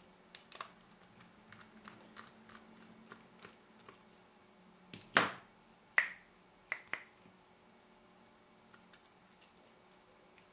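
Small clicks and taps of a precision screwdriver and fingers working on the plastic and metal parts of a partly disassembled Canon EF-S 17-85mm zoom lens, at the small screws at the back of its USM focus motor. Four louder clicks come about five to seven seconds in.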